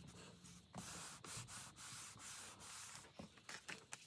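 Faint rubbing and rustling of paper being handled, in several short stretches, with a few light taps near the end.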